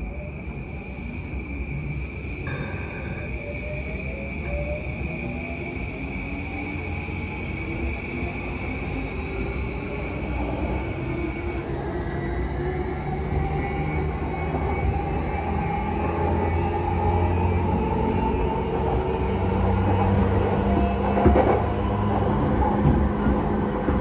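JR Yamanote Line E235-series electric train heard from inside the car, pulling away and gathering speed. Its traction motors whine in several tones that rise steadily in pitch, and the running noise grows louder. A steady high tone cuts off about halfway through, and a few sharp knocks come near the end.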